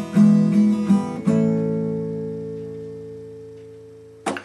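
Acoustic guitar strummed a few times, then a last chord left ringing and slowly fading away as the song ends.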